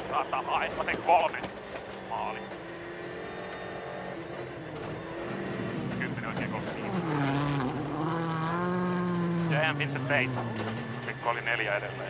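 A World Rally Car's turbocharged four-cylinder engine running hard on a gravel special stage. Its note holds steady at first, then dips and climbs again in the second half as the driver shifts and comes back on the throttle.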